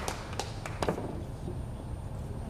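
Carom billiard balls clicking during a thin-hit three-cushion shot: the cue tip strikes the cue ball and the balls knock against each other. Three sharp clicks come in the first second.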